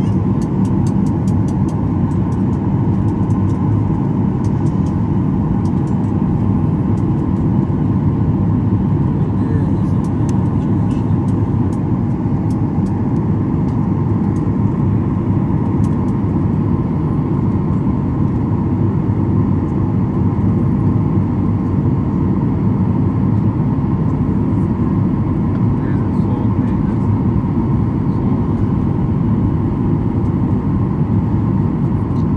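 Steady airliner cabin noise in flight: the wing-mounted turbofan engine and the rush of air, a deep even rumble heard through the fuselage beside the engine, with a few faint clicks.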